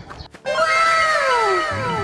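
A cartoon sound effect: a meow-like cry that begins about half a second in, rises briefly, then slides down in pitch. It repeats over and over in overlapping, gradually fading echoes.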